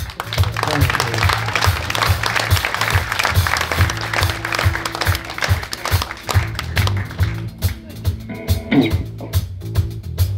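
Audience applauding over a live blues band vamping a steady groove on electric bass and drums. The applause dies away about three quarters of the way through while the groove carries on.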